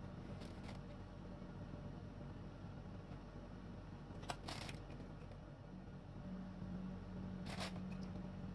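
Faint kitchen handling noises over a low steady hum: a few light scrapes near the start, a sharp click about four seconds in followed by a short rustle, and another short rustle near the end.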